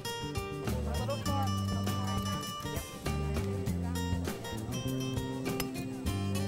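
Background music with acoustic guitar: held notes and plucked chords at an even level.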